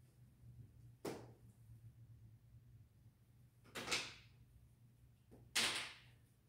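Plastic drafting triangle and dry-erase marker handled against a whiteboard: a sharp tap about a second in, then two short scraping strokes near four and five and a half seconds in, over a low steady room hum.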